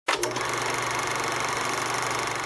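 Film projector running: a steady, rapid mechanical clatter and whir with a low hum, starting abruptly with a click or two.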